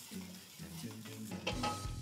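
Chopped onion, carrot, celery and garlic sizzling faintly in oil in a pot as they are stirred, the vegetables starting to caramelise. A soft low thump near the end.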